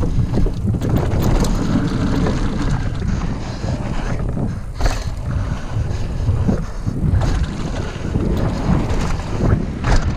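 Wind buffeting an action camera's microphone as a mountain bike descends, with continuous tyre rumble and rattling from the bike. There are a few sharp knocks, the clearest about five seconds in and another near the end.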